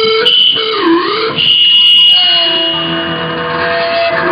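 Seven-string electric guitar kept sounding by a homemade speaker-feedback sustainer, a small speaker over the strings driven from a distorted amp. Sustained distorted notes that dip and glide in pitch, a shrill high feedback tone about a second and a half in, then a long held lower note easing slightly down.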